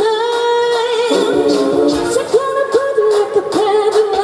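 Female vocalists singing a pop song live into handheld microphones over an amplified accompaniment with a steady beat; a long held note in the first second gives way to shorter sung phrases.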